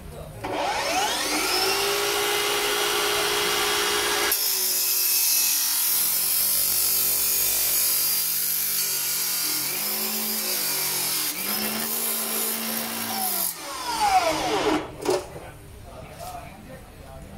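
Makita DLW140Z 14-inch cordless cut-off saw spinning up with a rising whine and running free for a few seconds, then its abrasive wheel cutting through a steel square tube for about nine seconds: a loud grinding hiss, with the motor's pitch sagging under load twice. Near the end the cut finishes and the motor winds down with a falling whine and a couple of knocks.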